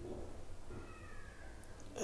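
A faint animal call in the background, one drawn-out tone lasting about a second and drifting slightly down in pitch, over a low steady room hum.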